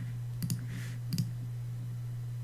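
Computer mouse clicking twice, each a quick press-and-release pair, about half a second and a second in, over a steady low hum.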